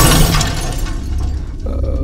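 Loud crash sound effect, a noisy smash that dies away over about a second, leaving a low rumble.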